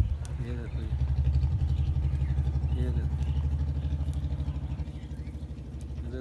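A low, steady engine hum with a fast pulse, loudest in the first couple of seconds and easing off toward the end.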